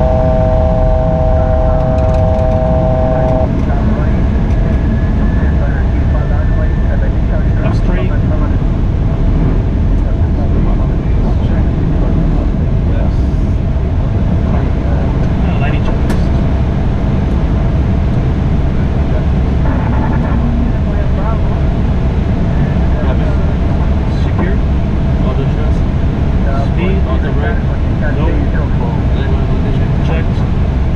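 Steady, loud rush of airflow and engine noise inside an airliner cockpit on approach with the landing gear down. For about the first three seconds, a steady electronic tone of several pitches at once sounds over it.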